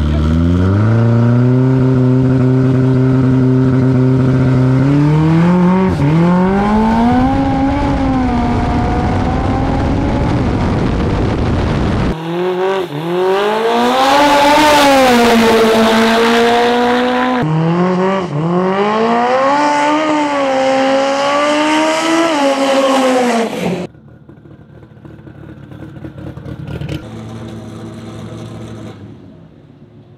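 Turbocharged four-cylinder drag car held at steady revs on the start line, then accelerating hard, its engine pitch climbing and dropping back at the gear changes. The sound is cut across several shots and turns much quieter for the last few seconds.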